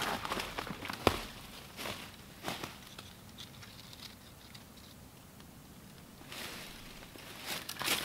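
Footsteps crunching and rustling through dry fallen leaves on the forest floor: sharp crackles in the first few seconds that die away, then a rustling that grows louder over the last couple of seconds as the walker comes closer.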